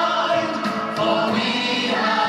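Children's choir singing, holding long notes.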